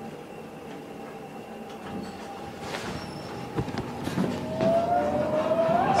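Elevator cab travelling upward: a steady running noise with a few scattered clicks and rattles, growing louder over the last two seconds, with a thin rising whine near the end.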